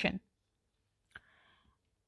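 A single short click about a second into a pause in speech, otherwise near silence.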